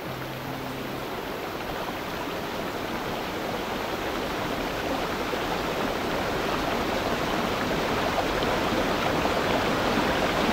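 Small forest stream running over rocks: a steady rush of water that grows gradually louder.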